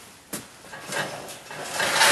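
A wire rabbit cage being handled: a sharp metal click about a third of a second in, then rattling and rustling that grows louder toward the end as a hand reaches into the cage.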